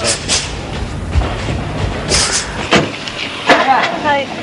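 A car engine running with a steady low rumble, with a few brief voices near the end.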